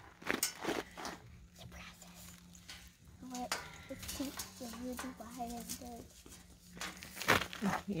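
Light knocks and clinks of black metal arbor pieces as the curved top arch is fitted into the side panels, a few near the start and a couple near the end, under soft talk and a steady low hum.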